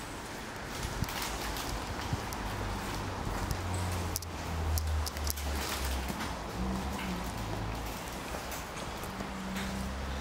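Footsteps on a hard tiled floor with a few handling clicks, over a low hum that comes and goes.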